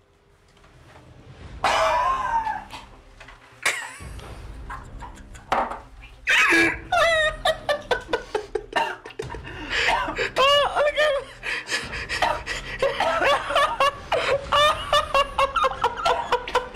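People laughing in repeated bursts while a man gags and retches over a bin.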